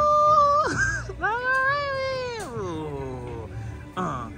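A woman's voice singing long wordless notes: one note held steady until about half a second in, a quick swoop, then a second long note that arches and slides down in pitch about three seconds in.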